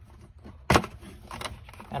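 One sharp click about a third of the way in, followed by a couple of fainter clicks: a push-on wire terminal being pulled off the sensor connection on top of a water heater's anode rod.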